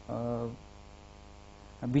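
A man's voice gives one short drawn-out syllable, then pauses, leaving a faint steady electrical mains hum in the studio audio. Speech starts again near the end.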